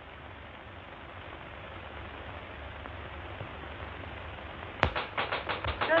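Steady soundtrack hiss, then about five seconds in a sharp click and a rapid, evenly spaced rapping on the building's glass entrance door, about eight knocks a second, as someone tries to be let in.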